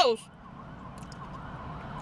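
A faint siren wailing, its pitch rising and falling, heard during a pause in talk.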